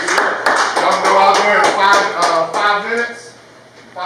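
A group of people clapping their hands in a steady rhythm, about three claps a second, fading out about two seconds in, with voices over it and a short lull near the end.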